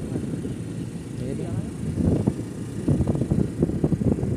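A person talking indistinctly over the steady low rumble of a moving vehicle.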